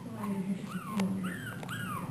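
Brussels Griffon puppy whimpering: a run of short, high whines, each rising then falling in pitch. She is crying for attention.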